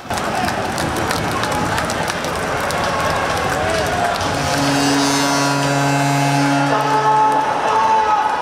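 Ice hockey arena after a goal: the crowd cheering over music from the arena speakers, with a steady low tone held for about three seconds in the second half.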